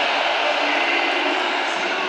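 Large arena crowd cheering loudly and steadily, reacting to a wrestling pin.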